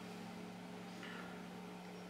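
Low, steady electrical hum from an electric guitar's amplified signal chain while the strings are not being played, with a faint brief scrape of fingers on strings about halfway through.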